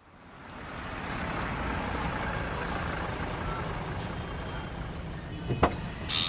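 Steady background ambience with an even rushing noise, like distant traffic, fading in over the first second and then holding level. A couple of sharp clicks come near the end.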